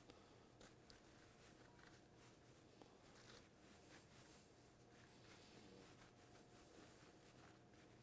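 Near silence: room tone with faint, soft scraping from a spoon scooping the gills out of a portobello mushroom cap.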